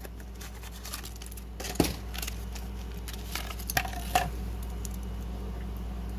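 Hands tearing open a toy car's cardboard-backed plastic blister pack: scattered crinkles and clicks, with a sharper snap a little under two seconds in.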